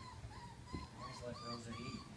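Five-week-old Vizsla puppies whimpering: a run of short, high, wavering whines, some overlapping.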